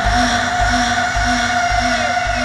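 Beatless breakdown of an electronic trance track: a steady held synth note over a low rumble, with a lower note pulsing about two or three times a second and no drums.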